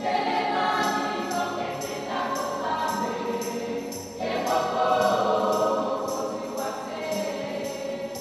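African choir singing a lively song in several voices, over a light, steady percussion beat of about two strokes a second.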